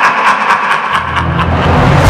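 Film-trailer sound design: a fast pulsing of about seven beats a second fades away while a deep low rumble swells in from about a second in, building toward the title hit.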